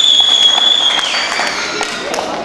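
A small group clapping, with a long high whistle held steady for about a second that then drops in pitch and fades.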